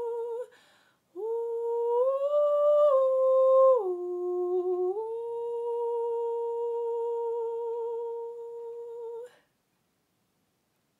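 A woman's unaccompanied voice singing a slow, wordless lullaby melody in a soft hummed tone. A held note ends just after the start; after a short breath and a pause, the tune steps up, drops to a lower note about four seconds in, then settles on a long note with a gentle waver that stops about a second before the end.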